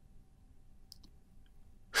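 A pause in the talk: faint room tone with a thin steady hum, and a couple of soft clicks about a second in.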